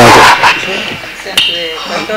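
Quieter voices talking in the background, with a single sharp click about one and a half seconds in.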